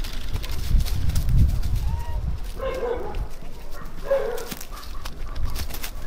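Two short animal calls near the middle, each about half a second long.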